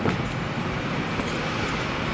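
Steady, even rumble and hiss of a parked vehicle running, with no separate knocks or changes.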